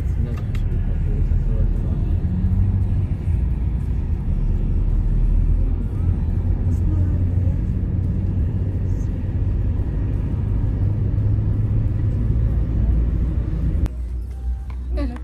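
Steady low rumble of engine and road noise inside a moving car's cabin, heard from the back seat.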